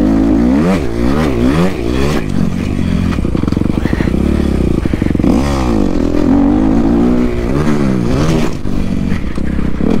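Kawasaki dirt bike engine being ridden hard, its revs rising and falling over and over as the throttle is worked, with a deep drop and climb about halfway through.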